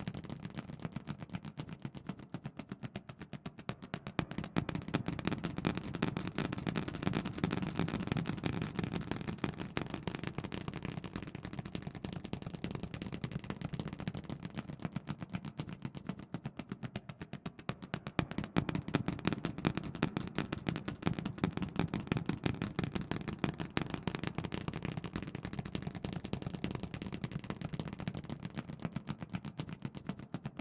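Feathers flapping fast and close, a continuous rapid rattle of small clicks over a low rumble, swelling and fading in waves.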